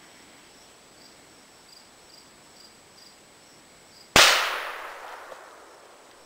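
A single shot from a Sears, Roebuck Model 101.1380 .410 bolt-action shotgun: one sharp, loud report about four seconds in that rings out and fades over a second or so.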